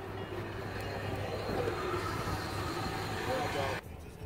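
Steady outdoor background noise with a low, even hum, with faint voices in it; it cuts off suddenly near the end.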